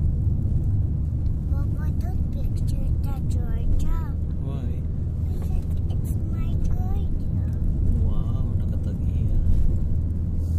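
Car driving along a road, heard from inside the cabin as a steady low rumble of engine and tyres. Voices talk over it for a few seconds in the first half and again briefly near the end.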